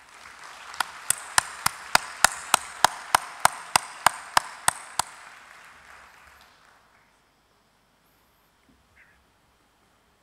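Audience applause, with one set of loud, regular claps close to the microphone at about three a second that stop about five seconds in; the rest of the applause fades out by about seven seconds.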